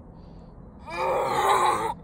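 A person's throaty, groan-like vocal sound, about a second long, starting about a second in.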